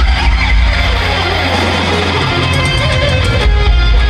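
Live hard rock band playing loudly, an electric guitar leading over drums and bass.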